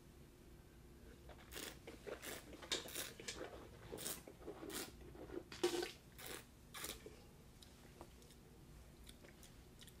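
A wine taster slurping a mouthful of red wine, sucking air through it in a run of short wet slurps, then spitting it into a spit bucket about six seconds in.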